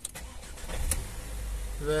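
Ford S-Max engine cranking briefly and catching, then running with a steady low rumble, heard from inside the cabin. It starts now that the failing Cobra immobilizer's cut line has been bypassed by joining the wires.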